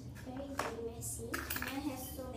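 A child's voice, talking or humming softly, over the sounds of hands working sticky slime: a sharp click about half a second in and a short crackly, sticky noise around a second and a half in.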